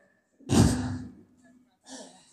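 A man's heavy sigh into a close microphone about half a second in, the breath hitting the mic with a low rumble, followed by a faint short breath near the end.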